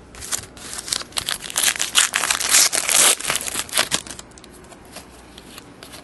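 A trading-card pack's wrapper being torn open and crinkled: a run of crackling rustles for about four seconds, loudest around the middle, then it dies down.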